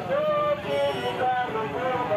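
Several marchers' voices chanting together in drawn-out, sung-like lines, over the steady low running of a vehicle engine.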